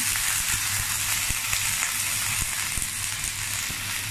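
Clams and freshly added oyster sauce sizzling in a hot metal wok, a steady frying hiss with a few faint clicks.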